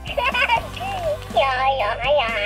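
Baby Alive Baby Gotta Bounce doll's built-in electronic baby voice babbling in short high-pitched phrases, with a children's tune playing underneath.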